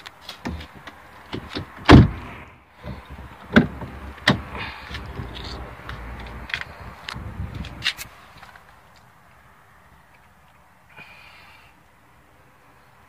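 Knocks and clicks of a car's doors and trim being handled, with one heavy thump about two seconds in and a few lighter knocks after it. The clatter stops about eight seconds in, leaving a brief rustle near the end.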